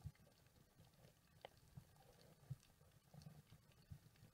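Near silence with the camera underwater: a faint low muffled rumble and a few soft clicks.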